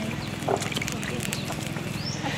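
Faint background chatter of several people's voices, with scattered light clicks and a steady low hum underneath.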